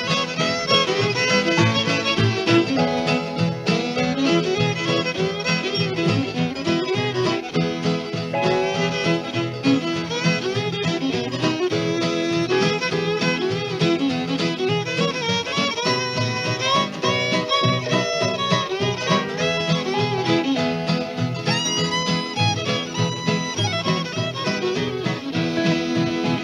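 Instrumental break of a 1940s country string band, with fiddle carrying the melody over strummed acoustic guitars and bass. It is heard from a 78 rpm shellac record.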